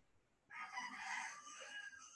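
A long animal call starting suddenly about half a second in and holding to the end, with several pitched overtones.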